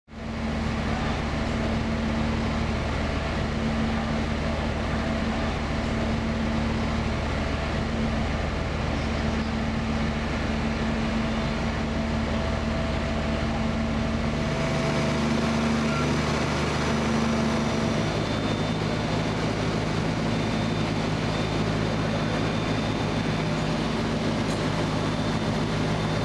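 Fire apparatus engines running steadily at the fire scene, a constant low mechanical drone with several steady hums, its low tones shifting a little partway through.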